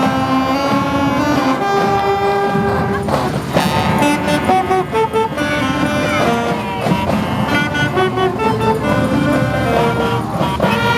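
Marching band playing a tune on the move, the saxophones loud and close, their notes held and shifting in pitch every second or so.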